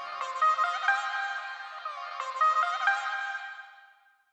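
Short electronic outro jingle: a bright, high melody of quick notes with no bass, fading out near the end.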